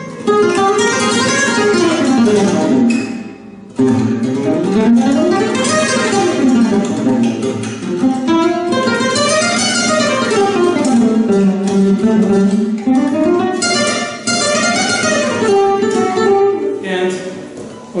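Spruce-topped Simplicio flamenco guitar played solo, in fast single-note scale runs that climb and fall in pitch. The playing breaks off briefly about three seconds in and tails off near the end.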